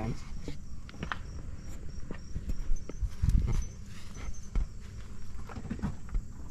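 Irregular footsteps crunching on gravel, mixed with scattered knocks and low thumps from a handheld camera being moved.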